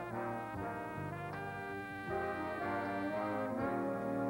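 Jazz big band playing, with a trumpet leading over sustained brass chords that shift every half second to a second.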